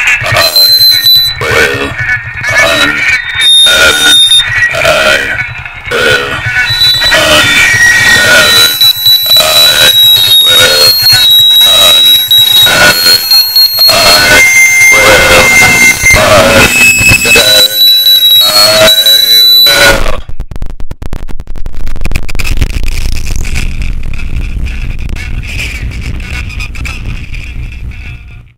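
Loud harsh noise music: dense, rapidly pulsing noise laced with shrill whistling tones. About twenty seconds in it gives way to a lower rumbling drone that fades away and then cuts off.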